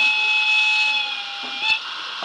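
A single held locomotive whistle, about a second and a half long, from the sound unit of a model E94 electric locomotive. Its pitch bends up slightly at the end, followed by a sharp click.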